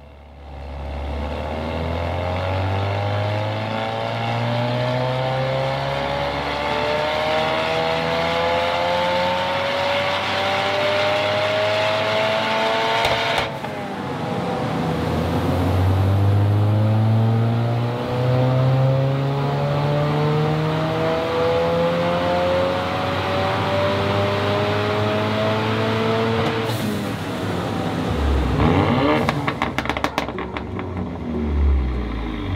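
A 2020 Ford Mustang's tuned 2.3-litre EcoBoost turbocharged four-cylinder, with a sports-cat downpipe and the stock exhaust, pulling at full throttle on a chassis dyno. The pitch climbs steadily for about twelve seconds and drops abruptly, then climbs again and drops near the end.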